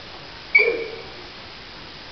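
One short, sharp shout from a hung gar kung fu performer, delivered with a strike during a form, about a quarter of the way in, dying away within half a second.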